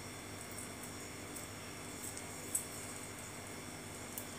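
Quiet room tone: a steady low hum and hiss, with a few faint soft ticks and one slightly louder tick about two and a half seconds in.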